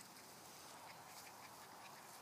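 Near silence: faint outdoor background hiss with a few faint, short, high-pitched sounds.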